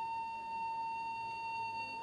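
A single steady high-pitched tone, held at one pitch without wavering, over a faint low room hum.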